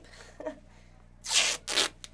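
Duct tape being pulled off the roll in two quick rips about a second and a quarter in, the second shorter than the first.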